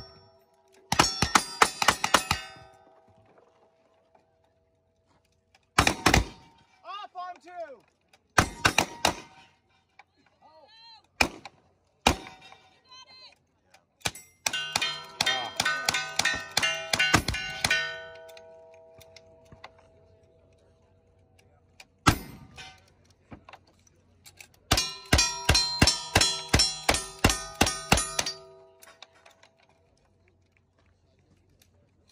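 Rapid strings of gunshots in several bursts with short pauses between, mixed with the clang and ringing of steel targets being hit. The firearms are cowboy action pistols and long guns, some loaded with black powder.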